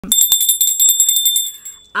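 A small bell ringing in quick repeated strikes, a bright high ringing tone that stops being struck about three quarters of the way through and fades away.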